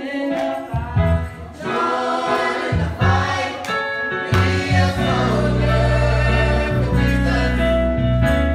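Gospel singing by a group of voices in a church, with low sustained bass notes from an instrument joining about halfway through.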